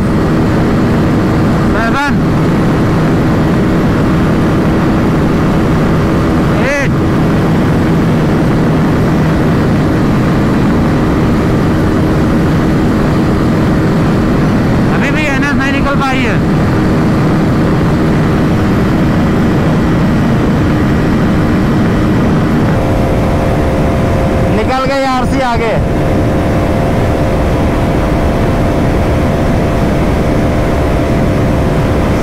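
Single-cylinder 373 cc sport motorcycle engine held flat out near top speed, about 160 km/h, under a heavy rush of wind over the camera. The engine note is steady and changes once, about three quarters of the way through.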